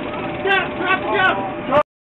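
Several short, loud shouted calls from police officers, one after another, over a steady faint tone. The sound cuts off abruptly just before the end.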